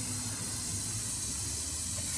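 Aerosol spray paint can spraying in a steady hiss.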